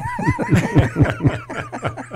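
Men laughing together at a joke, a quick run of 'ha' pulses about six a second, overlapping voices.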